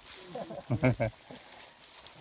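A person's voice, quieter than the close speech before it: a few short syllables in the first second, then low outdoor background.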